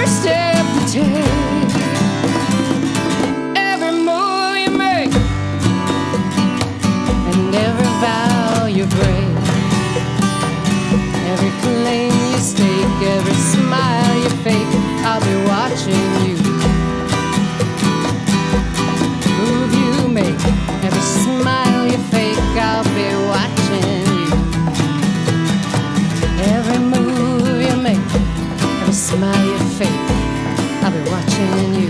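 Live acoustic country song: two acoustic guitars strumming and picking, a Roland HandSonic electronic hand drum keeping a steady low beat, and a woman singing. The bass and beat drop out briefly about four seconds in.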